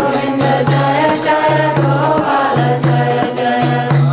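Devotional chanting sung to a melody, accompanied by a hand drum and percussion keeping a steady quick beat of about four strokes a second.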